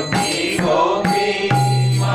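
A man singing a Bengali Vaishnava bhajan to his own khol (clay mridanga) drumming. Sharp strokes on the small head fall about twice a second, and a deep bass stroke about one and a half seconds in keeps ringing.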